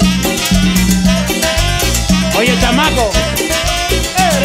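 Live cumbia music from a band, loud and continuous with a steady dance beat and a repeating bass line.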